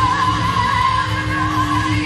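A woman singing one long held high note with a slight waver, over instrumental accompaniment in a live Spanish-language worship song.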